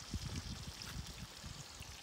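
Quiet, steady outdoor background noise: an even rushing hiss with a flickering low rumble underneath.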